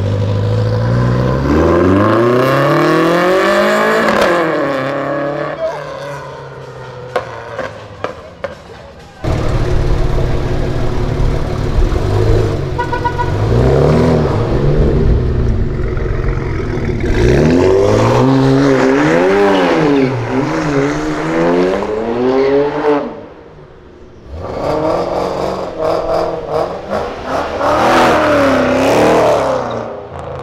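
Modified cars accelerating away one after another, engines revving hard up and down through the gears. First comes a Ford Ka with a swapped Volkswagen GTI turbo engine and DSG gearbox, tuned to make exhaust pops, with a burst of short crackles as its revving dies away.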